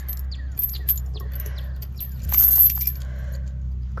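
Galvanized steel chain links and a metal carabiner clinking and jangling as they are handled, with a louder burst of jangling a little past halfway.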